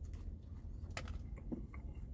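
A person biting into a meatball sub sandwich and chewing it, with a few faint short mouth clicks.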